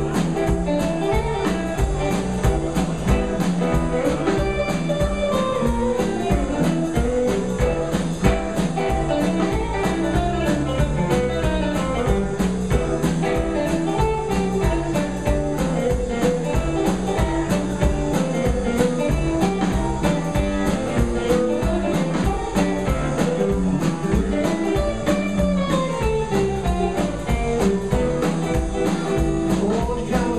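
Live blues band playing an instrumental passage: hollow-body electric guitar over bass and drum kit, a steady driving beat with no singing.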